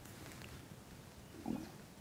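Quiet room with one short, soft throaty vocal sound from a woman about one and a half seconds in.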